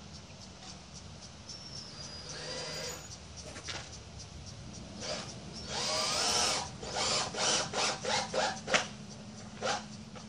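Power drill driving a lag screw into pine lumber: a short whine, then a longer run under load, then a string of short trigger bursts about two a second as the screw is driven home.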